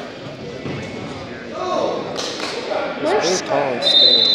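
Spectators talking and shouting during a wrestling bout, with a few thuds of the wrestlers on the mat. Just before the end a referee's whistle blows a steady high note, stopping the action.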